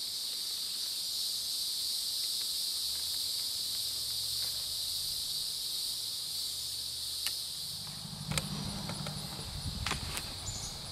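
Steady high-pitched buzzing chorus of insects. Near the end a low hum rises underneath it, and there are a few light clicks.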